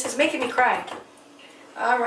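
Speech only: a woman talking, with a short pause about a second in.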